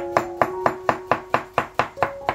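Chef's knife chopping zucchini into cubes on a bamboo cutting board: a steady run of quick cuts, about four a second, each ending in a knock of the blade on the wood.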